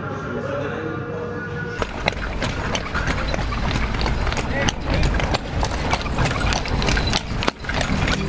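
Horse-drawn carriage on a paved road: from about two seconds in, the horse's hooves clop irregularly and the cart rattles over a steady rushing noise. Before that come voices with music.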